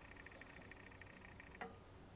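Near silence in a workshop: a faint, fast, high-pitched ticking that fades out about one and a half seconds in, then a single soft click.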